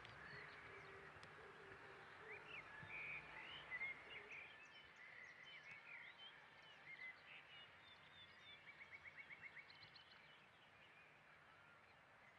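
Faint outdoor ambience with small birds chirping: scattered short calls through the first half, then a quick trill of about ten notes in the later part.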